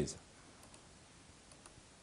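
A man's voice trails off right at the start, then quiet room tone with a few faint clicks.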